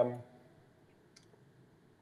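Near silence in a pause of speech, with one faint click a little over a second in.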